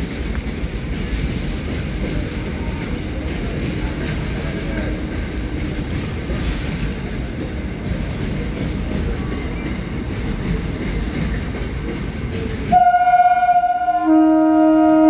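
Steady low rumble of trains at a railway platform. Near the end, a train horn sounds loudly as a chord of several steady notes.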